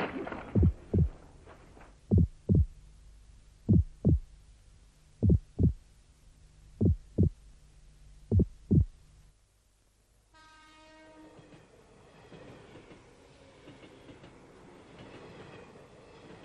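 Soundtrack heartbeat effect: six deep double thumps, lub-dub, about one and a half seconds apart over a low steady hum. The hum and beats stop about nine seconds in, and after a brief silence an electronic tone sounds, followed by a faint, grainy ambience.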